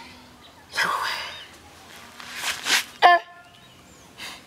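A man sobbing without words: two loud, breathy sobs, then a short high-pitched cry about three seconds in.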